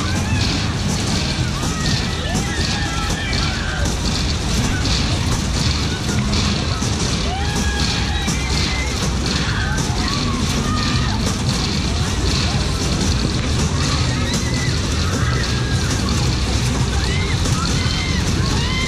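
Loud fairground music from a flying coaster ride's sound system, with the riders' voices shouting and shrieking in short calls scattered throughout as the cars swing round.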